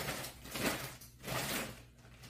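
Large plastic packaging bag rustling as it is handled, in a few swells of noise with short quieter gaps.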